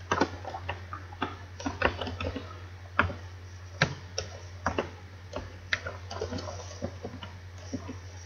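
Typing on a computer keyboard: irregular keystroke clicks, a few each second, over a steady low hum.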